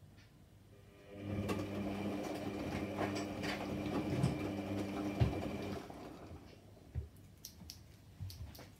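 Electra Microelectronic 900 front-loading washing machine turning its chevron drum during a wash, laundry tumbling inside. The drum motor starts with a steady hum about a second in, runs for about four and a half seconds, then stops for the pause between turns; a single thump comes near the end.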